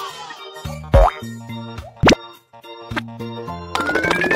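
Children's background music with cartoon sound effects: two quick upward pitch sweeps, about one and two seconds in, and a slowly rising whistle that starts near the end.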